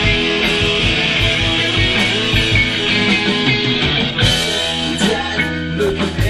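Live rock band playing loud: electric guitars, bass and drums over a steady drum beat. A little over four seconds in, a cymbal crash opens a new section with a held low bass note.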